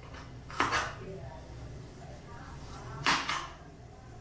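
Kitchen knife chopping fresh ginger on a plastic cutting board: two short bursts of knife strikes, one under a second in and one about three seconds in.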